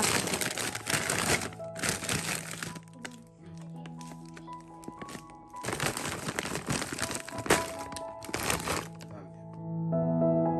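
A plastic freezer bag of frozen prawns crinkling as it is handled in a freezer drawer, in four bursts with short pauses between them, over soft background music.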